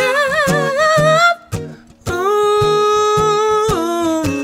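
A male soul singer sings a wavering vocal run with no clear words over strummed acoustic guitar. After a short break where only the guitar strums are heard, he holds one long note that drops in pitch near the end.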